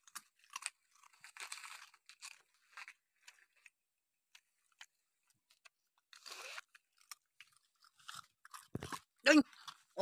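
Dogs chewing and crunching pieces of cake: scattered, irregular crunches and clicks with short pauses between bites.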